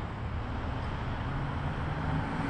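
Road traffic noise: a steady rumble of cars on a city street, getting slightly louder toward the end as a car approaches.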